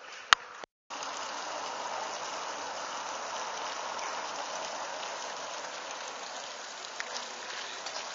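A single sharp click, then, after a brief break, a steady rushing hiss.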